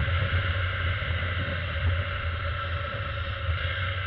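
Honda motorcycle engine running steadily at road speed, with wind buffeting the action camera's microphone.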